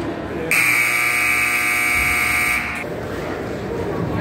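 Ice hockey arena's scoreboard buzzer sounding one long steady tone for a little over two seconds, starting about half a second in and cutting off sharply, with the game clock at zero: the signal that play has ended. Crowd chatter from the stands continues underneath.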